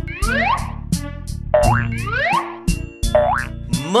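Cartoon 'boing' spring sound effects, about four quick rising glides, over upbeat children's background music with a steady beat.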